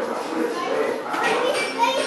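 Background chatter of children's voices, with music playing underneath.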